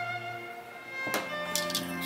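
Background music of sustained bowed strings, with a sharp click about a second in and a few lighter taps after it.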